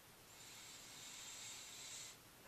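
A man's slow, faint breath in, a soft hiss that gradually swells for nearly two seconds.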